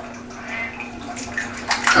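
Raw eggs being cracked by hand over a mixing bowl: soft wet sounds of the egg contents dropping out, with a couple of sharp shell clicks near the end.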